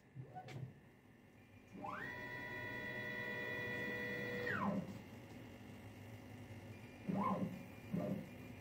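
Holzprofi 6090 CNC router's axis drive motors whining as the head is jogged. The first move lasts about two and a half seconds: the pitch climbs quickly, holds steady, then drops away. Two short rise-and-fall moves follow near the end.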